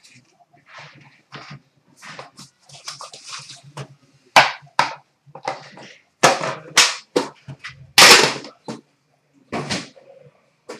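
Trading-card packaging being handled and opened by hand: a run of short, sharp crinkles, rips and scrapes, growing louder and busier from about four seconds in.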